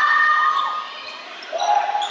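Basketball game in play in a gym: sneakers squeaking on the hardwood court and the ball being played, with voices around. The squeaks come as short gliding chirps, busiest at the start and again near the end.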